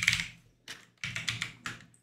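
Computer keyboard typing: a short run of separate keystrokes over the second half.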